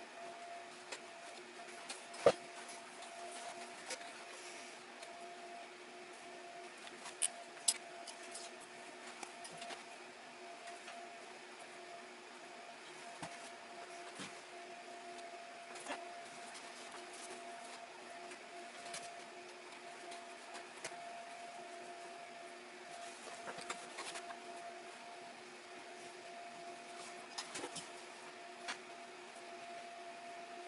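Hand-stitching leather: faint rustles and scattered sharp clicks as a needle and thread are worked through the hide, the sharpest click a couple of seconds in and two more close together around eight seconds, over a steady low hum.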